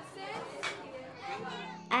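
Children's voices chattering faintly, with a low steady musical note coming in a little after halfway.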